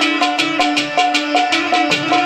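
Sitar-led instrumental folk music: a short melodic phrase repeats over and over above a fast, steady beat of sharp strokes.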